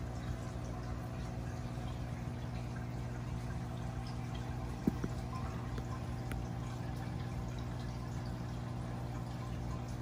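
Faint water sloshing in a small plastic bowl as a gloved hand moves a fish back and forth through it, over a steady low hum. One short click about five seconds in.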